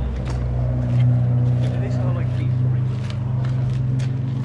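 A car engine idling with a deep, steady low rumble that swells slightly about a second in.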